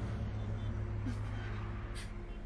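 A car running, heard from inside the cabin as a steady low rumble of engine and road noise. A brief, short voice sound comes about a second in.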